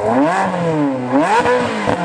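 A car engine revving, its pitch rising and falling twice.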